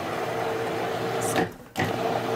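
Food processor motor running as it blends lemon tahini sauce, cutting out briefly about one and a half seconds in and starting again, as the machine is pulsed.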